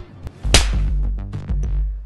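A sudden sharp hit about half a second in, followed by a low steady electronic drone from the film's dramatic score.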